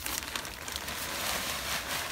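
Plastic bag of soil being tipped, loose soil pouring out of it with a steady hiss and the bag rustling.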